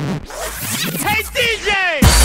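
Breakdown in a hard drum and bass track: the beat and bass drop out, a sampled voice is heard, then a string of quick falling pitch sweeps comes in about a second in and grows denser.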